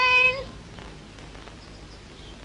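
A short, loud, high-pitched animal call, held on one pitch and rising slightly at the end, which stops about half a second in.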